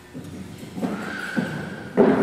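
A high, drawn-out squeal lasting most of a second, with short voice-like yelps around it, echoing in a large hall.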